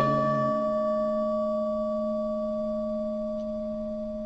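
Buddhist bowl bell struck once, ringing on with a steady pure tone that slowly fades, in the pause between lines of chanting.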